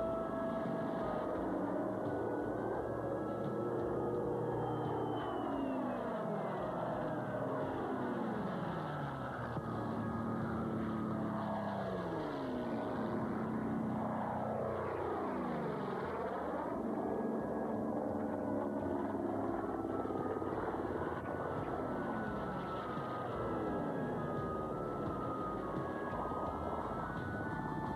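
Propeller-driven World War Two fighters, a Vought F4U Corsair among them, making low passes. The engine drone drops in pitch as each aircraft goes by, several times over, with two passing close together around the middle.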